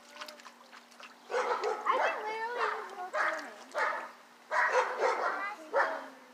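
Children's high-pitched yelling and squealing in two bursts of several calls, the first starting about a second in and the second near the end. A faint steady hum runs underneath.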